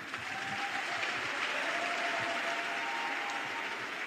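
A congregation applauding steadily after a prayer ends.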